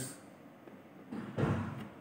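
A dull thump and brief handling noise about halfway through as a hand works one of the small input switches on an electronics trainer board, followed by a faint click near the end.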